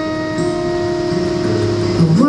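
Live song: a woman's voice holds one long, steady sung note over acoustic guitar.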